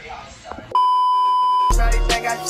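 A single steady electronic beep, one pure tone held for about a second, which stops abruptly as hip hop music with heavy bass comes in near the end.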